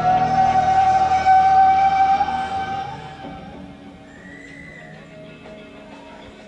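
Live rock band music from a concert recording: one long held note, drifting slightly upward, dominates the first half and fades away about three seconds in, leaving a quieter stretch with a faint high tone.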